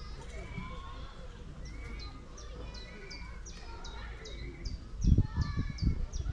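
Birds singing, one of them repeating a short high note that slides downward, about three times a second from about two seconds in. A few loud low thumps come near the end.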